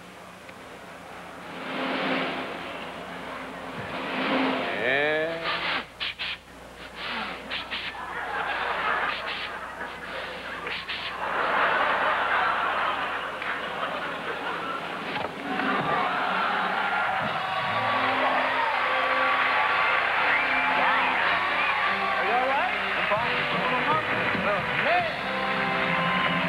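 A man's loud breathing-exercise vocalisations, then a quick run of sharp cracks as arrows snap, followed by a studio audience cheering and applauding while a band plays.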